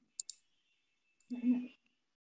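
Two brief clicks just after the start, then a short murmured voice sound about one and a half seconds in, with total silence between them as on a noise-gated call line.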